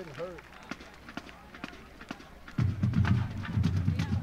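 Low crowd murmur from the stands, then about two and a half seconds in a marching band's drums start up loudly with a fast, pulsing low beat.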